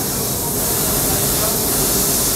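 Steady hiss from a running jewelry laser welding machine, even and unbroken with no distinct pulses.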